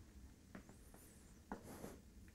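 Faint chalk writing on a blackboard: a few light taps of the chalk and a short scratch near the end.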